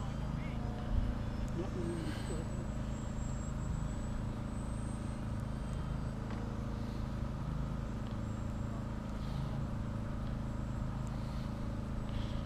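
Steady drone of an electric RC model airplane's motor and propeller in flight, with a faint high whine over it. Faint voices come in about a second in.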